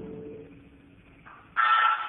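A cell phone sounds the touch-tone (DTMF) beep for the digit 8 into a door intercom, injecting a keypad digit to manipulate the door's entry system. The loud two-tone beep starts about one and a half seconds in and lasts about half a second.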